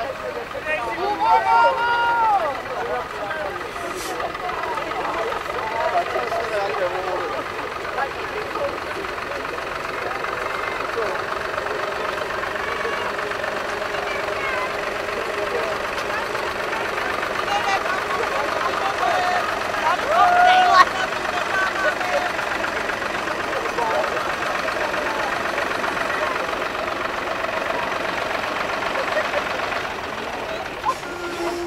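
A farm tractor's engine running steadily close by as it pulls a loaded trailer, with people's voices and chatter over it, most clearly in the first few seconds.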